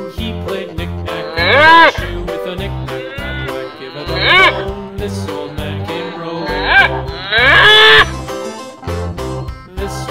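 A cow mooing four times, loud, the last moo the longest, over background music with a steady beat.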